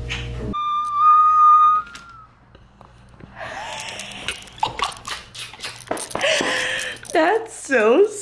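A woman gives a high, held squeal of excitement, then breaks into breathless laughter with repeated squeals.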